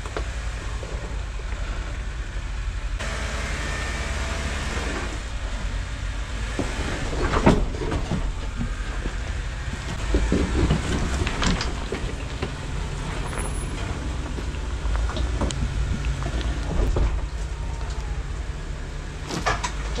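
Lifted Jeep Wrangler's engine running at low speed as it rock-crawls up a boulder-strewn trail, a steady low rumble, with several sharp knocks from tyres and chassis on rock, the loudest about seven seconds in and a cluster around ten to twelve seconds.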